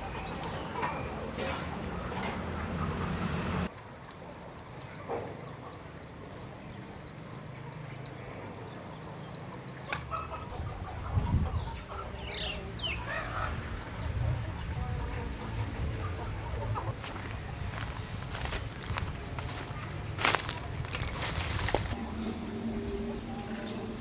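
Chickens clucking in the background of an outdoor ambience, with a few sharp clicks near the end.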